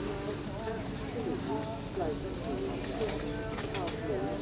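Indistinct voices talking over a steady low hum, with a few sharp clicks near the end.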